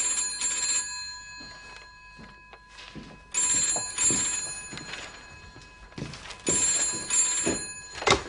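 Telephone bell ringing in the British double-ring pattern, three rings about three seconds apart, before it is answered.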